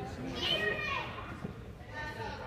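Noise of young children playing basketball in a gym, with a high child's voice calling out about half a second in.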